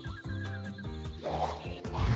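Background music from an animated children's educational video, with a whooshing transition effect swelling about halfway through.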